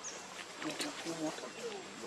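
Faint, broken, low-pitched human voice fragments over a steady outdoor background, with a few light clicks.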